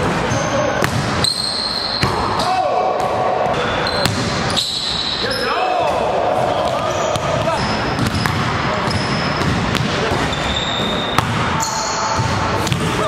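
A basketball bouncing on a hardwood gym floor several times, with indistinct voices throughout.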